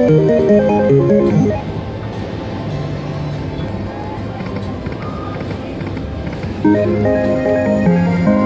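Turtle Treasures slot machine playing short electronic melodies during its free-spins bonus: a quick run of notes at the start and another from about seven seconds in, as line wins come up. Steady background noise fills the gap between.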